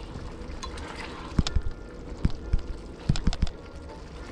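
Cream sauce bubbling in a hot stainless steel skillet, with a spatula knocking and scraping against the pan in a quick run of sharp taps from about a second and a half in.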